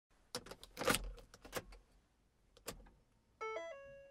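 Faint logo-animation sound effects: a quick series of swishes and clicks, a lone click a little later, then a brief chime of a few stepped notes near the end that fades out.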